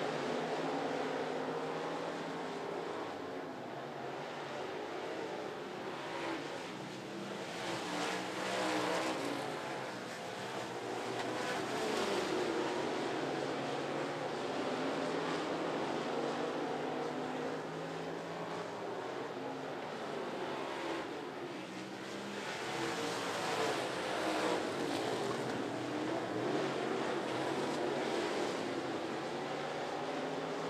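Several dirt-track stock cars racing on a clay oval, their engines rising and falling in pitch as they lift into the turns and accelerate off them. The sound swells louder several times as cars go past.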